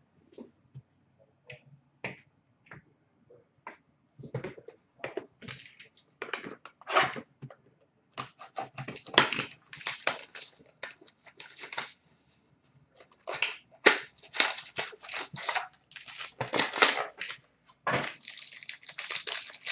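Hockey card pack wrappers being torn open and crinkled, with cards handled and slid against each other: a few light clicks at first, then dense bursts of rustling and tearing from about four seconds in.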